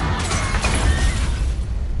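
Disaster-film trailer sound design: a sudden, loud, deep rumble with dense crashing noise, standing for an earthquake.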